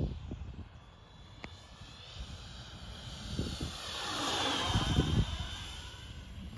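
The twin electric ducted fans of a Freewing Me 262 RC jet whine as the model makes a pass. The sound swells from faint to loudest about four to five seconds in. It is running at part throttle, about 20%.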